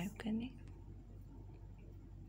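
A woman's voice finishes a few words in the first half second. After that only a steady low hum and faint room noise remain.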